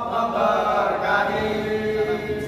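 Group of male voices chanting a sholawat (Islamic devotional song praising the Prophet) together, with held notes in a chant-like melody.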